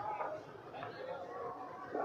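Faint voices murmuring during a short pause in a man's talk.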